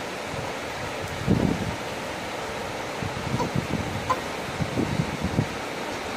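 Steady background hiss with soft rustling and low bumps of cloth and the handheld phone being moved, during a lull in an infant's crying.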